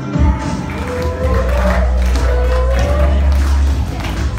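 Karaoke backing track with a steady, heavy bass, and girls singing over it into microphones.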